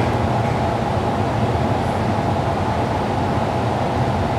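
Steady low rumbling background noise with a faint even hum, unchanging throughout; no speech.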